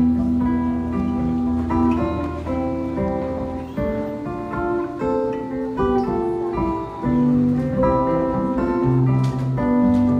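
Live rock band playing an instrumental passage with no singing: electric guitar and keyboard notes changing in steps over a low bass line.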